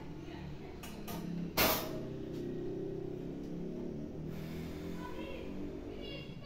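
A few knocks of a metal cake pan being handled on a kitchen counter, the loudest about a second and a half in, followed by faint steady background music.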